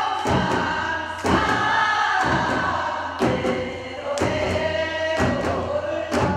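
Group of voices singing a Korean folk song in unison, punctuated by strikes on buk barrel drums and small sogo hand drums, roughly one beat a second with occasional doubled strokes.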